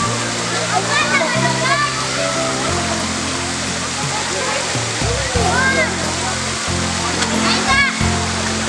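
Steady rush of water pouring from a pool's mushroom fountain, with splashing and the voices of people and children in the pool. Background music with held bass notes plays underneath.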